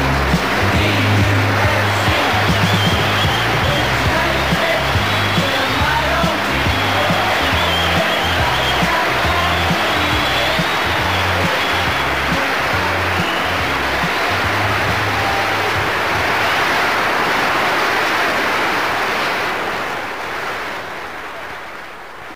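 Recorded music with a pulsing bass line under a dense, noisy wash of sound, fading out over the last few seconds.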